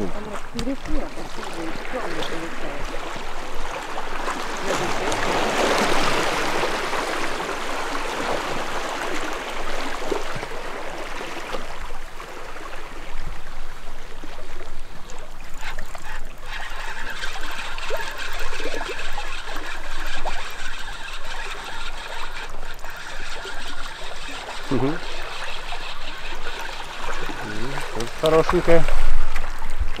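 Sea water splashing and lapping against a rocky shore while a hooked fish is played on a spinning rod and reeled in, with a few brief voices near the end.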